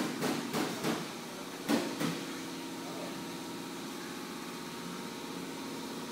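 A steady mechanical hum, like a motor or engine running, with a few short knocks and clicks in the first two seconds.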